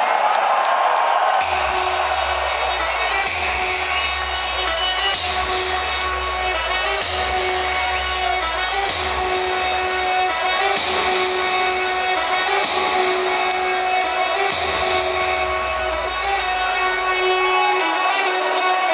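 Loud electronic dance music over a large venue's sound system. A heavy bass kick comes in about a second and a half in, under sustained synth notes.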